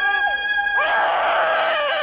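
Dramatic film background score: held string notes with sliding, wailing violin phrases, swelling into a dense, loud passage about a second in.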